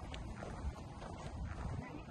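Wind rumbling on a phone's microphone, with soft footsteps of the person filming while walking.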